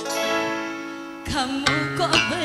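Live dangdut band music: a ringing chord sounds and slowly fades, then a woman's voice starts singing about a second and a half in.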